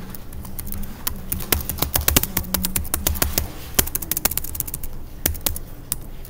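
Typing on a computer keyboard: a quick, uneven run of key clicks lasting about five seconds.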